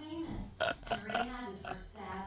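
A man laughing in several short bursts, a few per second, over quieter dialogue from the cartoon.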